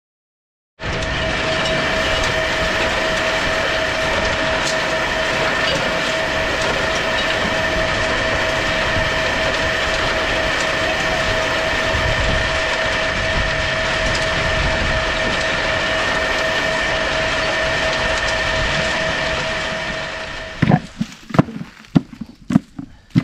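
Black walnut hulling machine and its elevator conveyor running steadily, a loud constant rattle with a steady high whine, as walnuts are fed in. It cuts off near the end.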